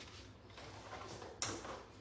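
Faint handling noise of a craft kit being fetched, with one sharp knock about one and a half seconds in.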